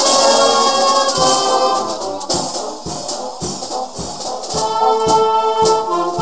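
A Portuguese filarmónica wind band playing, with held brass and woodwind chords over a steady drum beat about twice a second. The band thins and goes softer about two seconds in, then the full ensemble comes back in near the end.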